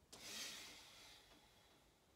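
A person's forceful out-breath, a rush of air that swells quickly and fades away over about a second and a half, exhaled as raised arms are swept down in a releasing breathing exercise.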